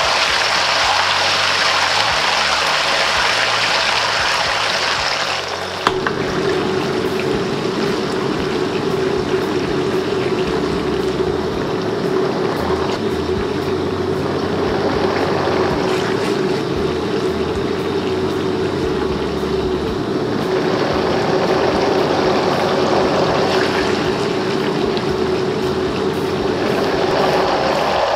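Chunjang (black bean paste) frying in hot lard in a carbon-steel wok, a steady loud sizzle as the paste bubbles through the oil. A steady hum runs underneath from about six seconds in until just before the end.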